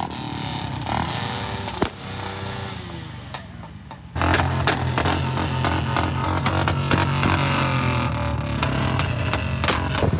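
Motorcycle engines running and revving, with rising and falling pitch. About four seconds in, music with a heavy bass beat cuts in suddenly and stays louder to the end.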